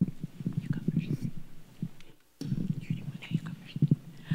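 Handling noise from a handheld microphone as it is carried: irregular low rumbles and soft knocks, with a brief lull about two seconds in.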